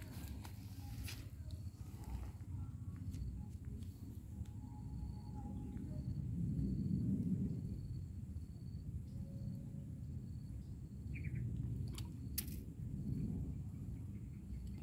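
Outdoor ambience: a low rumble of wind and handling on the microphone, swelling in the middle, under an insect chirping faintly about twice a second, with a few sharp handling clicks.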